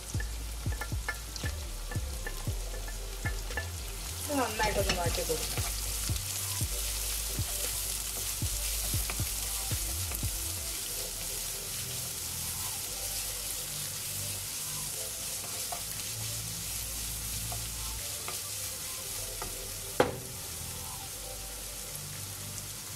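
Sliced onions and green chillies sizzling in hot oil in a nonstick kadai, stirred with a wooden spatula: a steady sizzle with frequent clicks and scrapes of the spatula, thickest in the first half, and one sharp knock near the end.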